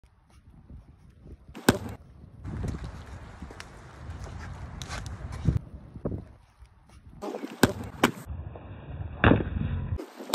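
Sharp smacks of strikes landing on a blocking arm, about five of them spaced irregularly, the loudest near the start and near the end, over wind rumbling on the microphone.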